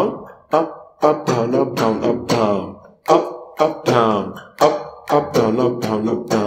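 Electric guitar strummed in a steady down-and-up rhythm, two to three strokes a second, each chord ringing briefly before the next. This is a basic strumming pattern for songs in 4/4.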